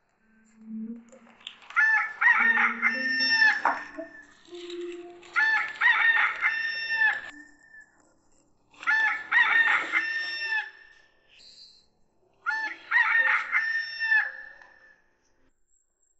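A rooster crowing four times, evenly spaced about three and a half seconds apart.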